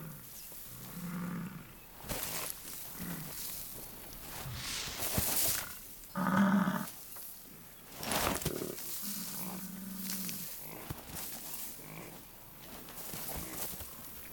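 American bison bull rolling in a dust wallow, its body scuffing and thudding on the dry ground, while it gives a series of deep, low grunting bellows. The loudest bellow comes about halfway through, and a longer drawn-out one follows a few seconds later.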